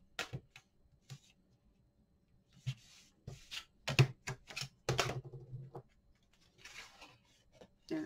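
Adhesive tape pulled off its roll and pressed down along the edge of cardstock, a run of irregular crackles, clicks and rustles, the loudest about four seconds in, with paper handling near the end.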